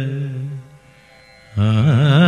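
Carnatic-style film-song music: an ornamented melodic line fades out about half a second in. After a short lull, a new phrase with sliding, wavering pitch starts abruptly about a second and a half in.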